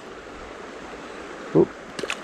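Steady rush of a shallow, clear stream flowing around the wader, with a short "oop" about a second and a half in. Right at the end comes a small splash as the released grayling drops back into the water.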